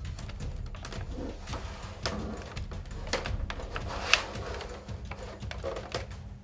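Faint scattered clicks and taps of a gloved hand and a magnet handling the plastic casing of an LCD monitor, with one sharper click about four seconds in.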